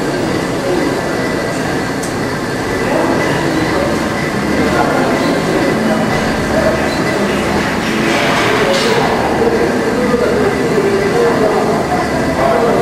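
Steady gym room noise: a continuous dense rumble with indistinct voices mixed in.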